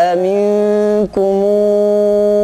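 A man's voice chanting Quranic recitation in the melodic tajweed style, holding long, steady notes, with a short break for breath about a second in.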